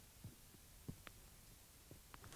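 Near silence: room tone with a few faint, irregular knocks and thumps.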